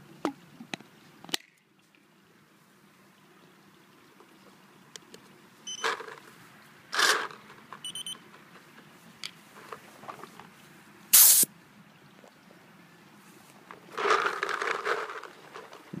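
Handling noises from an Empire Axe paintball marker and its paint-filled loader as it is readied to shoot: scattered clicks and knocks, a few short rustles, one loud sharp burst about eleven seconds in, and a rush of noise near the end.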